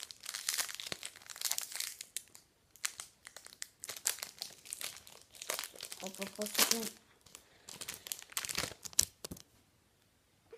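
Wrapper of a trading card pack being torn open by hand: a run of crinkling rustles and rips that stops about nine and a half seconds in.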